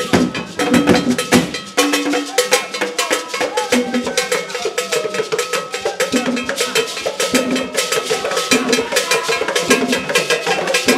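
Traditional Ghanaian drum ensemble playing: shoulder-slung cylindrical drums beaten in a fast, dense rhythm, with a metal bell ringing along.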